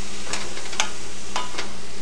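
Ground beef sizzling in a cast-iron skillet as it is stirred with a spoon, the spoon clicking against the pan about four times.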